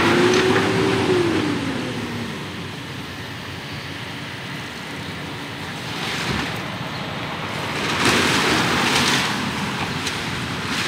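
Street traffic going by: a vehicle's engine hum rises and falls as it passes in the first two seconds, then two more swells of passing-traffic noise about six and eight seconds in.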